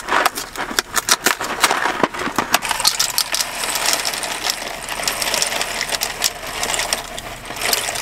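Dry penne pasta rattling out of a cardboard box and dropping into a pot of boiling water, a long run of small rapid clicks over a steady hiss.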